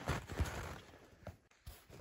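Footsteps crunching in snow, fading out after about a second, with a brief crunch near the end.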